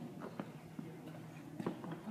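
Footsteps of a person walking slowly in a quiet room: a few short, unevenly spaced knocks over faint steady background noise.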